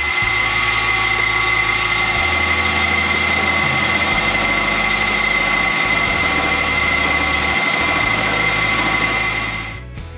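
Milling machine running steadily as its cutter machines a solid aluminum block down in height, a steady high tone running through the cutting noise, which stops just before the end. Background music plays underneath.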